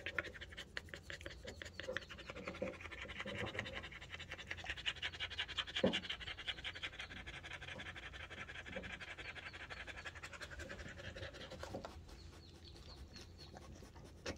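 A dog panting rapidly and evenly, winded after running; the panting grows fainter near the end.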